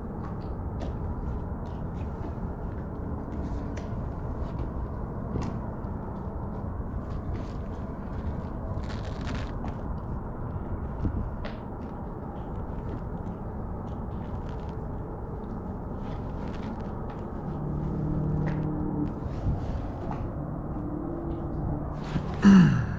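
Steady low outdoor background noise at the water's edge, with scattered light clicks. A brief hiss comes about nine seconds in, and a faint low hum of a few steady tones shows around eighteen seconds.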